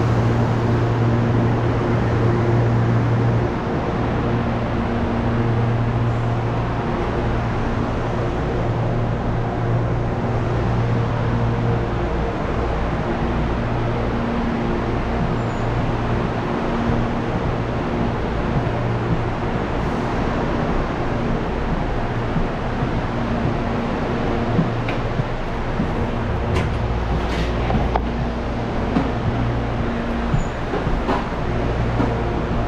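Standing electric commuter train humming steadily from its onboard equipment, a low hum with fainter higher overtones that swells and eases a few times. A few faint clicks come near the end.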